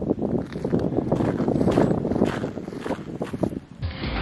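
Gusty wind buffeting the microphone, an uneven rumbling noise, cut off suddenly near the end as music begins.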